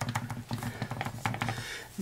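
Clear acrylic stamp block tapped again and again onto an ink pad to ink a rubber stamp: a quick run of light taps that stops near the end.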